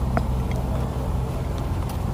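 Low, steady rumble of a motor vehicle engine running, with a faint click about a quarter second in.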